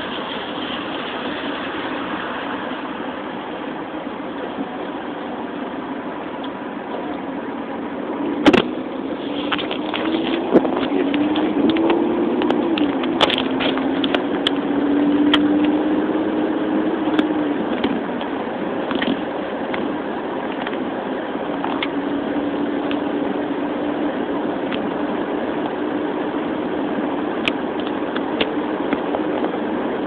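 Car engine and road noise heard from inside the cabin. A sharp click comes about eight seconds in; after it the engine note rises and falls as the car moves off, then holds steady.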